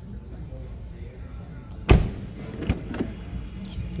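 A Mercedes-Benz car door being handled: one sharp, loud thump about two seconds in, then two lighter clicks, as the rear door is opened.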